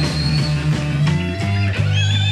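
Live electric blues band playing an instrumental passage: electric guitar over a steady bass line, with a high held note that bends slightly upward and fades about half a second in.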